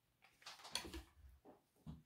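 Faint handling noise: a short rustle about half a second in and two soft knocks, as a hot glue gun is put down on the work table.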